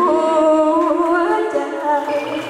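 A woman singing a Thai song in long held notes that step up and down in pitch and waver slightly, with little accompaniment under the voice.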